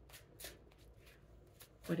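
A deck of tarot cards being shuffled by hand, a scattered run of soft card flicks.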